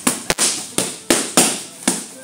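Boxing gloves hitting focus mitts: about six sharp smacks in quick, uneven succession as a punch combination lands.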